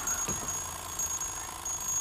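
Mechanical alarm clock bell ringing steadily, starting suddenly.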